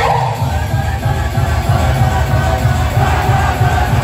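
Live idol pop song played loud through a PA system, with a strong bass beat and a crowd of fans shouting along.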